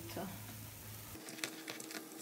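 Cornmeal bread patties frying in oil in a nonstick pan, a faint steady sizzle, with a couple of light clicks from tongs against the pan about halfway through.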